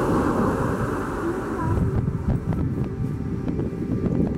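Wind buffeting the camera's microphone: an uneven low rumble, with a few faint clicks in the second half.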